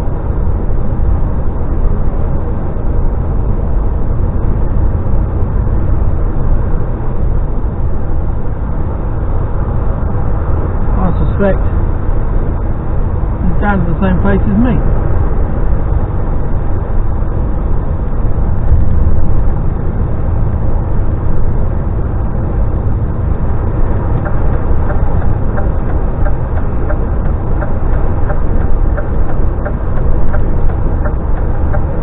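Steady low drone of a DAF XF lorry cruising on a motorway, engine and road noise heard inside the cab. Two short voice-like sounds come through about eleven and fourteen seconds in.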